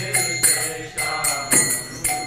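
Kirtan music: a mridanga drum beats a steady rhythm of strong strokes about twice a second, with small hand cymbals ringing over it and voices chanting a mantra.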